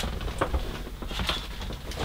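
Light knocks and small rustles of things being handled on a workbench, with one sharper knock about half a second in.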